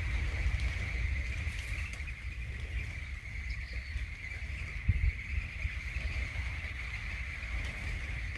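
A steady insect chorus, a high even buzz, over a low rumble, with a brief knock about five seconds in.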